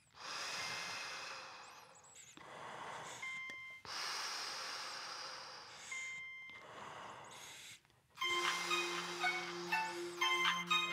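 A person breathing heavily in long, ragged breaths, four in a row, with a short electronic beep twice between them. Music comes in about eight seconds in.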